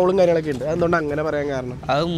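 Speech only: a young man talking into a handheld microphone, in a language that the recogniser did not write down.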